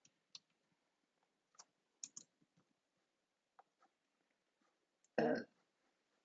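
Sparse, faint computer keyboard and mouse clicks as a line of code is typed and run. About five seconds in, a brief, loud throaty vocal sound, the loudest thing heard.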